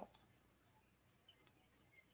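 Near silence: room tone, with one faint, short squeak a little over a second in.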